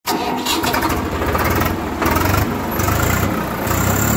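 Loud engine sound effect, the engine revving in a few surges.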